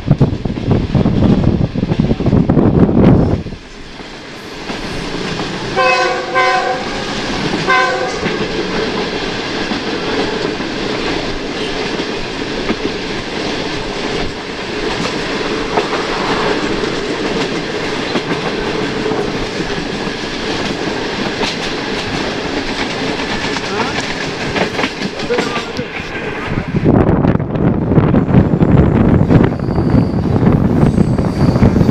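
Passenger train running at speed, heard from an open door: wind buffets the microphone, then drops away suddenly, leaving steady rail and wheel noise. About six to eight seconds in come a few short blasts of a locomotive horn. The wind buffeting comes back near the end.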